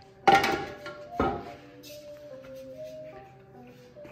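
Screen-printing gear handled: two sharp knocks about a second apart, the first and loudest ringing briefly, as a screen frame and scoop coater are picked up. Background music plays under it.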